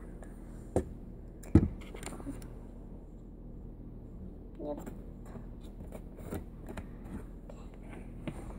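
Plastic glue jug and its screw cap being handled on a table: a few sharp knocks, the loudest about one and a half seconds in, then lighter taps and rustles, over a steady low hum.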